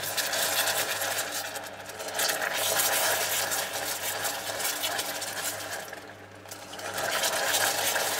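Hot caramel in a stainless saucepan bubbling and sizzling as hot cream is added a little at a time and stirred in with a spatula, over a steady low hum. The sizzling eases briefly about six seconds in, then picks up again.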